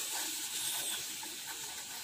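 A steady hiss, with faint scratching as a pen writes a word on paper on a clipboard.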